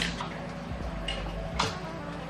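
A few light clicks and taps of shelf hardware being handled as a shelf is fitted into its brackets, the sharpest click about a second and a half in.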